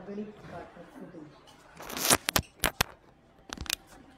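A brief rustle and a string of sharp clicks: handling noise, in two clusters about a second apart.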